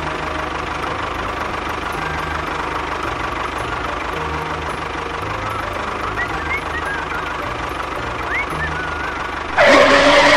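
Tractor engine running steadily with a low, even throb, a few short high chirps over it in the second half. Just before the end a sudden, much louder sound cuts in.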